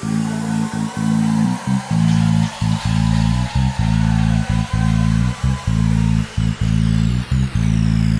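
Electronic dance music from a DJ set: a heavy bass line cut by frequent short breaks, with a high falling sweep near the end.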